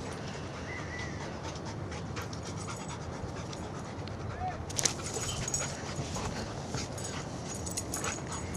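A large dog panting quietly while it plays with a fish on a line, under steady background noise.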